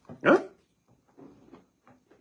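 A man's voice: one short questioning "hein?" with rising pitch, followed by a pause with only faint sounds.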